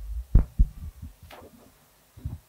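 Microphone handling noise: a cluster of low thumps, the two loudest about a third and half a second in, then a brief scraping rustle a little after a second in.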